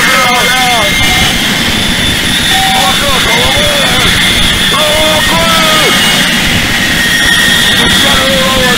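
Harsh noise / power electronics: a loud, unbroken wall of distorted noise with steady high whining tones. Over it, pitched wavering sounds bend up and down every second or so.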